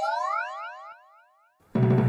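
A comic 'boing' sound effect added in editing: a springy tone whose pitch sweeps upward, fading out about a second in. After a brief silence, background music starts near the end.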